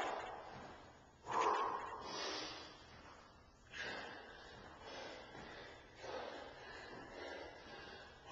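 A man breathing hard after a set of plyometric jumps: heavy, noisy breaths about once a second, the loudest about a second in, the rest a little fainter.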